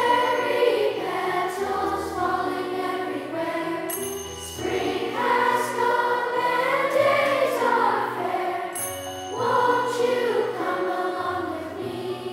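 Children's choir singing a slow song in three phrases over a low bass accompaniment. A bright, high tinkle sounds at the breaks between phrases, about four and nine seconds in.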